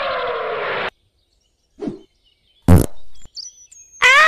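Cartoon energy-blast sound effect, a noisy rush that cuts off suddenly just under a second in. After a silence comes a brief falling tone, then a loud short burst about two-thirds of the way through, followed by a few faint high chirps.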